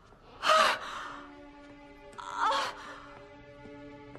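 A woman gasping sharply in shock, twice: once about half a second in, the louder one, and again about two seconds in. A soft held music chord sustains underneath.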